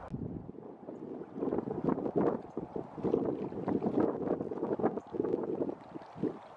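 Wind buffeting the microphone in irregular gusts, with crackling.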